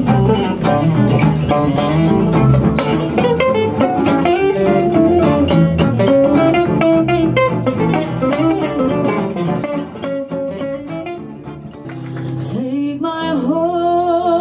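Archtop jazz guitar playing quick runs of notes and chords, easing off and dropping in volume about ten seconds in. A woman's voice starts singing near the end.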